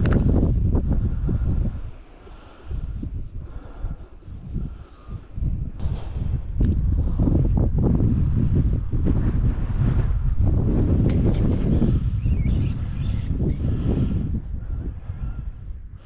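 Wind buffeting the microphone in low, rumbling gusts, easing off for a few seconds about two seconds in and then building back up.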